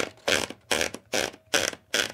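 A sheet of paper being rolled into a manual typewriter by turning the platen, in short repeated strokes. It makes a quick scratchy burst about every 0.4 seconds, six in all.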